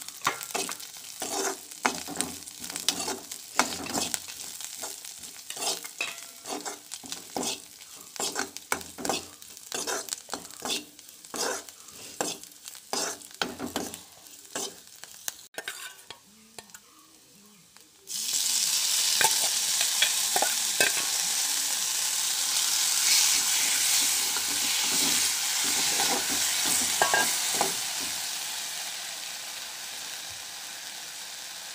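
A steel spoon scraping and knocking against a metal pan in quick repeated strokes as chopped leaves are stirred while they fry. About halfway through there is a short quiet gap. Then a loud, steady sizzle of frying starts suddenly and slowly fades near the end.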